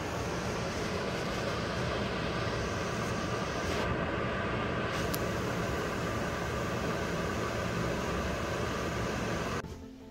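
A wood stove with its fire burning makes a steady rushing noise with a faint hum under it, and no crackle stands out. The sound drops away just before the end.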